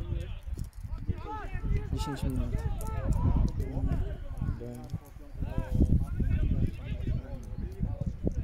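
Indistinct voices of footballers calling out across the pitch, in short scattered shouts, over a steady low rumble.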